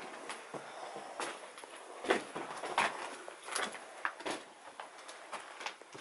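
Footsteps and shuffling over loose rubble and paper debris, making irregular knocks, crunches and scrapes.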